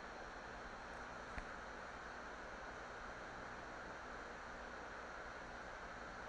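Faint, steady background hiss of room tone between words, with one faint click about a second and a half in.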